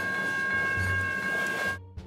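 A slow train passing close by: a low rumble with steady high ringing tones over it and wind buffeting the microphone. It cuts off sharply near the end, giving way to quiet music.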